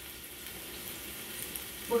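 Diced onions and raisins sizzling steadily in hot olive oil in a large frying pan.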